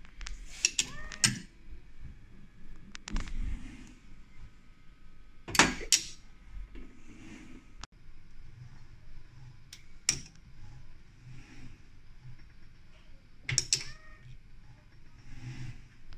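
Cobot gripper at work on steel bearings: a string of separate sharp clicks and metallic clacks, the loudest about six seconds in. Short rising and falling motor whines come with the clicks near the start and again near the end.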